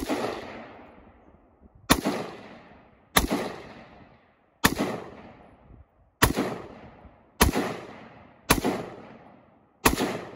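A Palmetto State Armory AR-15 rifle fired in single aimed shots, about eight of them, each one to one and a half seconds apart. Each shot trails off in a long echo.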